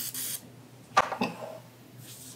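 A refillable pump-action oil mister sprays a hiss that stops a fraction of a second in. About a second in comes a single sharp knock as the bottle is set down on the countertop, followed by a brief murmur from a voice.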